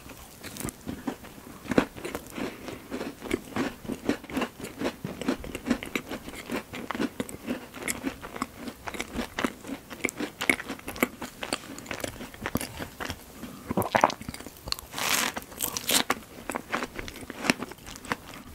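Close-miked chewing of a mouthful of strawberry cake: a quick, irregular run of small mouth clicks and smacks, with a louder burst about 14 to 16 seconds in.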